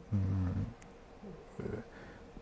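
A man's drawn-out hesitant 'hmm', about half a second long, then a short faint 'e' filler sound near the end, with quiet room tone between.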